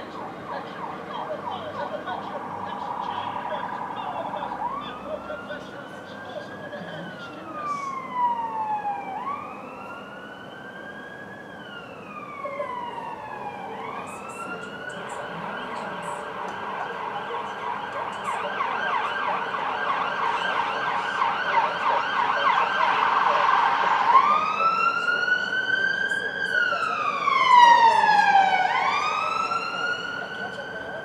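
Emergency vehicle siren switching between a fast yelp and a slow wail. Each wail rises quickly and falls slowly, about every four to five seconds, and the siren grows louder toward the end.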